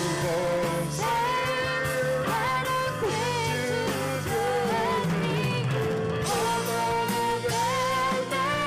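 Live rock band playing a song: a woman sings lead in held notes with vibrato, with a man singing harmony, over electric guitars, keyboards, bass and drums.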